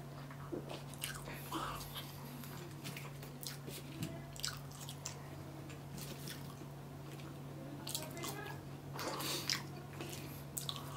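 Close-miked mouth sounds of a person eating French fries and a burger, chewing and biting with many short wet clicks and smacks scattered throughout, over a steady low hum.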